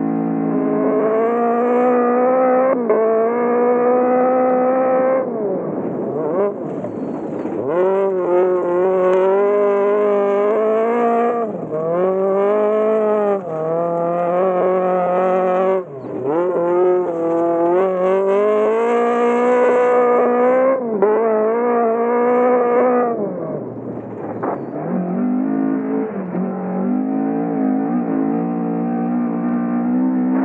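Datsun 1600 (P510) rally car's engine driven hard on a gravel lap. The revs climb and drop again and again, with several sudden lifts off the throttle, and the induction and exhaust sound is heard together.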